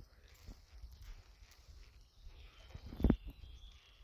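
Footsteps on a hard brick-paved barn floor scattered with debris, a few separate steps with the loudest about three seconds in, over a low rumble on the microphone.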